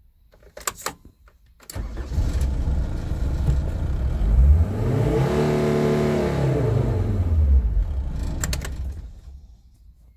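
SsangYong Istana van engine started with a click of the key about two seconds in, then revved while standing still: its pitch climbs steadily to around 4,500 rpm, holds there a couple of seconds, then falls back and dies away as the engine is switched off near the end.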